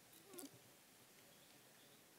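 Near silence: room tone, with one faint, brief bending sound about half a second in.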